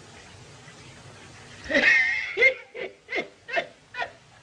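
Film-soundtrack hiss, then about a second and a half in a high pitched cry followed by a run of five short laugh-like yelps, about two and a half a second, fading away.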